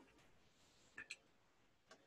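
Near silence broken by faint clicks of a stylus tapping on a pen tablet or touchscreen: two quick taps about a second in and one more near the end.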